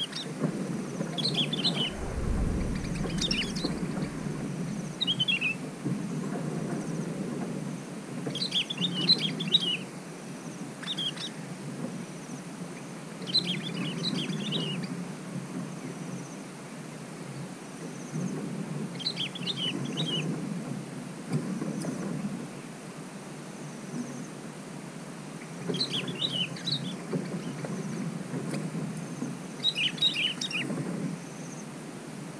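Bulbuls calling: short phrases of several quick, high notes repeated every few seconds, over a steady low background noise. A brief deep rumble comes about two seconds in.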